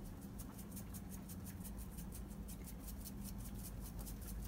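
Seasoning shaken from a shaker onto a raw duck, a faint run of rapid light ticks, several a second, over a steady low hum.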